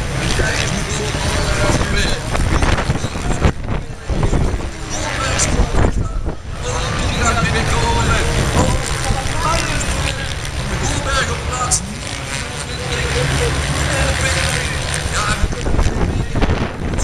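Strong wind buffeting the microphone with a heavy low rumble, over voices from the crowd and a public-address commentator. Motorcycle engines run faintly in the distance.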